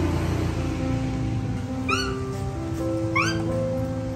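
Two short, high squeaking calls from a baby monkey, the first about two seconds in and the second about a second later, over background music.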